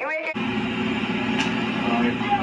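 A man's voice for a moment, then an abrupt cut to a steady din of crowd voices over a low hum.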